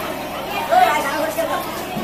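Indistinct chatter of several people's voices in a busy market, louder for a moment about a second in.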